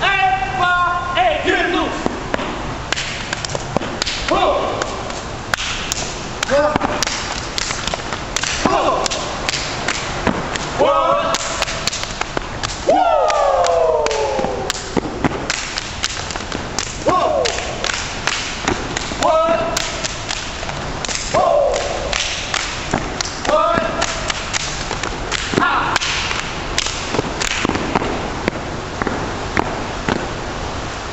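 Step team stepping: a rapid, continuous rhythm of foot stomps and hand claps, with short shouted calls from the men every couple of seconds.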